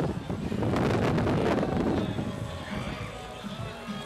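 Wind buffeting the onboard microphone of a moving slingshot-ride capsule, a rough rushing noise that eases off about halfway through, leaving faint background music.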